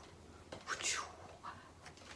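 Faint whispered speech from a woman, a few short breathy syllables with no voiced tone.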